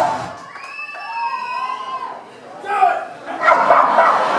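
Band music cuts off just after the start. Then a person gives one long, high-pitched yell lasting about a second and a half, followed by a shorter shout and crowd cheering near the end.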